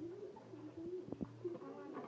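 A dove cooing in low, wavering notes, with a single sharp knock a little past a second in.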